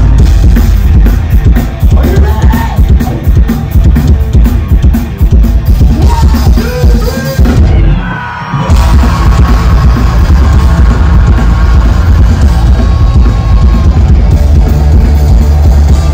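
Punk rock band playing live and loud through a festival PA: distorted electric guitars, bass and drums with yelled vocals. The band stops for a brief break about halfway, then comes straight back in.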